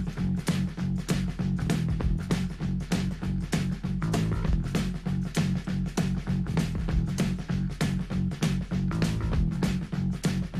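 Rock band playing an instrumental passage with no vocals. Bass guitar and drums lock into a steady, driving beat, with electric guitar over them.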